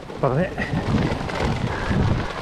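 Rumbling, rattling road noise from a bike-mounted camera jolting over wet cobblestones, with a brief voice from a rider near the start.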